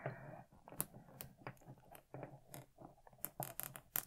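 Faint, irregular clicks and small scrapes of hard plastic as an action figure is handled, its stiff hand being worked to take an accessory.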